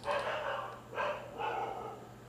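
A few short, faint dog barks in the background.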